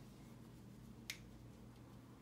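Near silence: quiet room tone, with one short sharp click about a second in.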